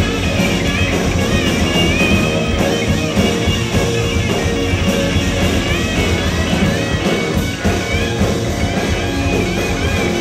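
Live punk rock band playing loud: distorted electric guitars, bass guitar and drums, with a high lead line that wavers and bends in pitch over the top.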